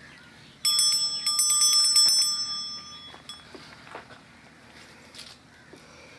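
A small bell rung several times in quick succession, starting suddenly about half a second in and ringing out for a second or so before fading.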